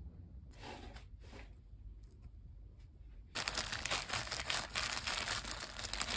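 Plastic zip-lock bag crinkling as it is handled by hand, starting abruptly about halfway through after a few faint rustles.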